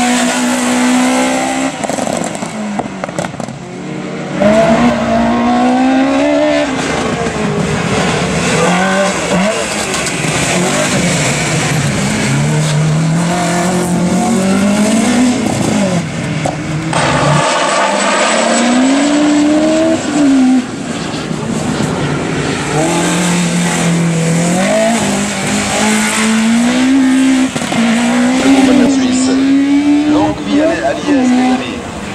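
Race-prepared Volkswagen Golf Mk1 engine revving hard through a cone slalom, its pitch climbing and dropping again and again as the driver lifts off and shifts gear. The sound breaks off abruptly a couple of times where the picture cuts.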